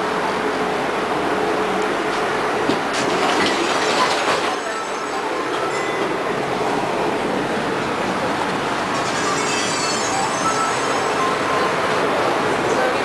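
Tram running, heard from inside the passenger car: a steady rumble of the wheels on the rails, with high wheel squeal starting about three-quarters of the way through.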